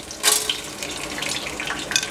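Corn kernels poured into the hot, oiled kettle of an electric popcorn machine. A sudden sizzle starts about a quarter second in and settles into a steady sizzling hiss dotted with small crackles.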